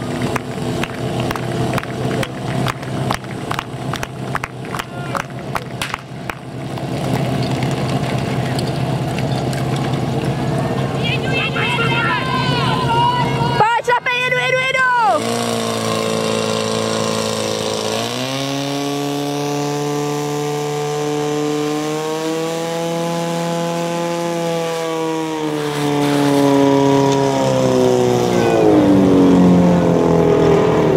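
Portable fire pump's engine running hard during a fire-sport attack, pumping water through the hoses. It pulses rapidly at first. About halfway through its pitch dips and then climbs as it is opened up, after which it holds a high steady note that rises again near the end.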